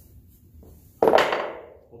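One loud metal clank about a second in, fading over about half a second, as the pry on the suspension parts lets go.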